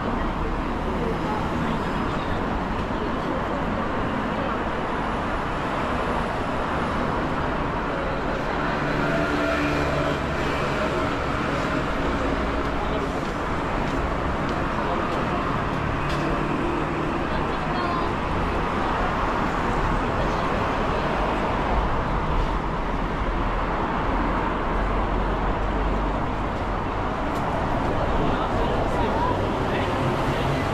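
Busy city street ambience: a steady traffic hum of passing cars, with passers-by talking.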